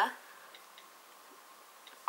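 A few faint, scattered ticks of fingers tapping on a smartphone screen.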